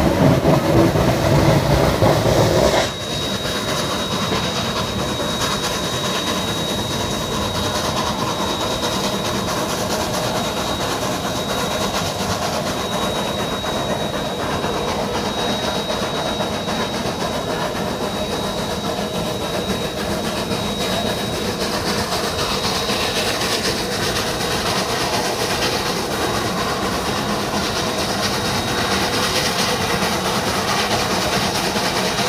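Three-truck Shay geared steam locomotive hauling open narrow-gauge passenger cars upgrade. Steam from the locomotive is loud for the first few seconds, then drops suddenly to the steady rolling clatter of the train, with a thin high whine held through much of it.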